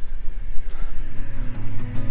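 Wind rumbling on the microphone of a handheld camera while cycling, with background music fading in about a second in.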